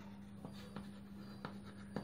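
Chalk writing on a chalkboard: faint scratching with a few light taps of the chalk as a word is written, over a steady low hum.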